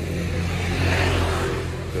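An engine running steadily with a low hum, swelling slightly about a second in and then easing off.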